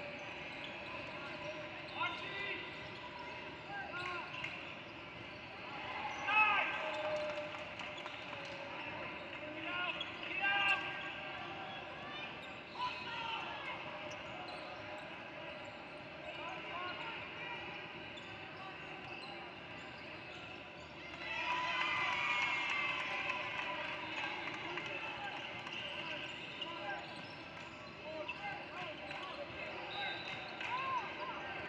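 A basketball dribbling on a hardwood gym court during play, among sneaker squeaks and voices from players and the sidelines, in a large echoing gym. About twenty-one seconds in the sound gets louder for a couple of seconds.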